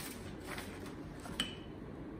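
Felt-tip markers being handled on a table, with one sharp click about one and a half seconds in, over quiet room noise.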